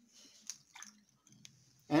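Faint pouring and handling sounds: a few light clicks and a brief soft slosh as red-dyed vinegar is tipped from a glass jar into the volcano's bottle.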